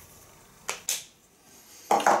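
Two short clicks close together from a whiteboard marker being handled, over faint room tone.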